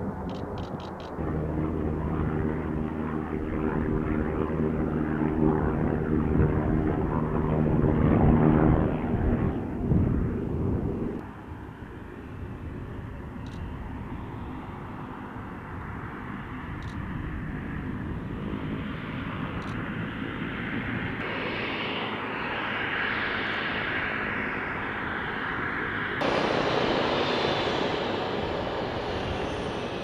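MQ-9 Reaper's turboprop engine and pusher propeller running: a steady drone of several tones as it moves along the runway, loudest about eight to ten seconds in. It drops abruptly to a quieter run, then switches suddenly near the end to a closer, hissing turbine whine.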